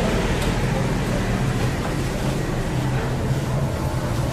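Steady rushing noise with a low hum from the ventilation of a döner kitchen, under faint background chatter.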